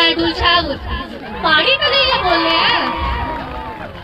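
Mostly speech: a girl speaking into a handheld microphone, with many crowd voices overlapping from about one and a half seconds in.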